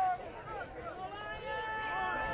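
Faint, distant shouting from players and spectators at a football game, with one long held call near the end.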